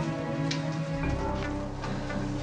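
Background music of sustained held chords under a faint hiss, the harmony shifting to a new chord about halfway through.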